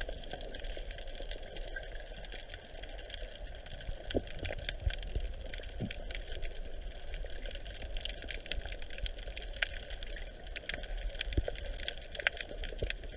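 Underwater ambience picked up by a submerged camera: a steady hiss with scattered sharp clicks and crackles.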